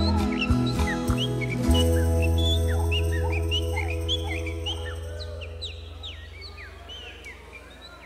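The song's closing chords on acoustic guitars and band, settling about two seconds in onto a long final chord that slowly fades away. Many songbird chirps, short rising and falling whistles, sound over it and continue as the music dies.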